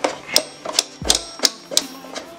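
Adjustable dumbbell's weight-selector dial being turned, clicking about three times a second as the weight is dialed up.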